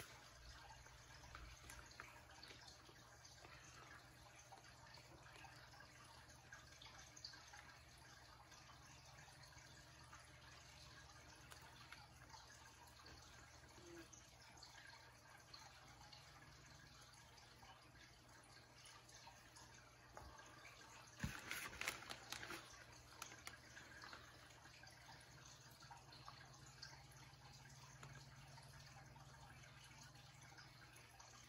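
Near silence: a faint steady low hum of room tone, broken about two-thirds of the way through by a brief cluster of clicks and rustling.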